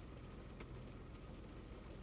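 Quiet car-cabin background: a low steady hum with a faint click a little over half a second in.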